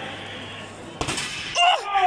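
A sudden sharp knock or crash about a second in, with a short ringing tail, followed by a cheering shout.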